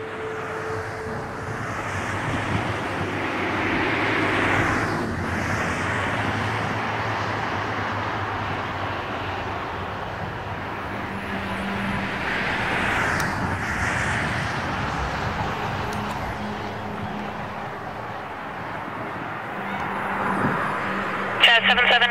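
Jet noise from a twin-engine widebody airliner on final approach: a steady rushing rumble that swells and eases twice.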